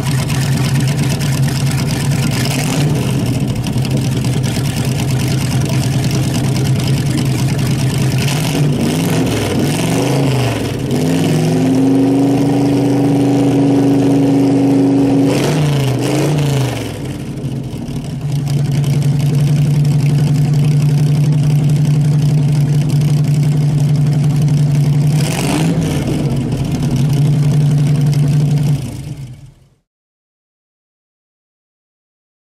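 1959 Corvette Stingray Racer's V8 idling, then revved up about ten seconds in and held high for a few seconds before dropping back to idle. It gives one more quick blip later, and the sound fades out near the end.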